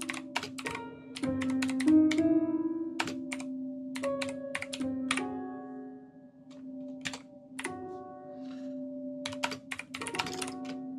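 Fast typing on a computer keyboard, sharp key clicks in quick clusters, with each run of keystrokes bringing in held musical notes from Ableton Live over a steady low note, so the typed text sounds out as music. The typing pauses briefly around the middle.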